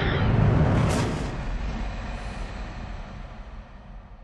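Cinematic logo-sting sound effect: a deep, rumbling whoosh with a sharp hit about a second in, then a long tail that fades away.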